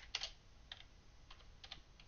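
Computer keyboard being typed on: several faint, separate keystrokes at an uneven pace.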